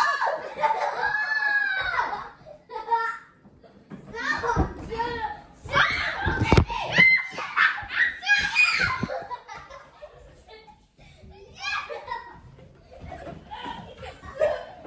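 Boys' voices exclaiming and laughing, with no clear words, and a few thumps about four to seven seconds in.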